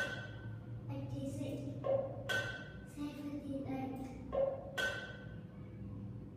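Marimba-like game music from a TV speaker: struck, ringing notes land about every two and a half seconds, with softer tones between, fading near the end.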